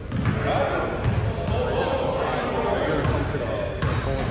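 A basketball bouncing several times on a hardwood gym floor, each bounce a sharp thud, with voices talking underneath.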